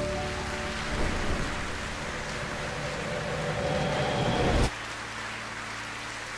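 Audience applauding, with faint music underneath. It cuts off abruptly about five seconds in, leaving a fainter hiss.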